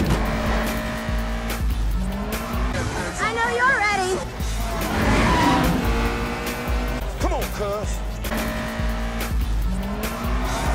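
Background music with a heavy, steady bass beat and a voice sliding up and down in pitch over it.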